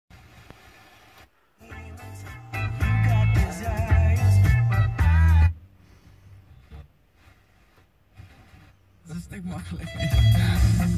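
Car FM radio being tuned step by step across the bottom of the band: faint hiss, a brief mute, then a station playing music with singing for a few seconds. The sound then drops almost to silence before a voice laughing and another station's music come in near the end, as 88.0 MHz is reached.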